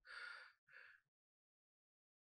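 A woman's two faint, breathy sighs in the first second, then silence.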